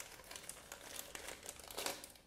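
Thin clear plastic bag crinkling as hands handle and open it, in a run of crackly bursts with the loudest crinkle near the end.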